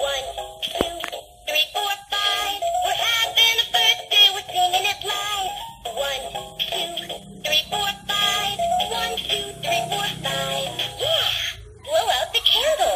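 Toy singing birthday cake playing an electronic birthday song with a synthesized singing voice through its small speaker, a stepped melody of short held notes, while its candle lights come on.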